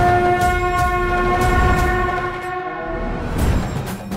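A conch shell blown in one long, steady horn-like note that fades out about three seconds in, over low drumming in the soundtrack.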